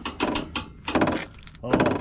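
Metal trailer coupler and safety chains rattling and clanking as they are handled at the tow hitch, in two short clattering bursts.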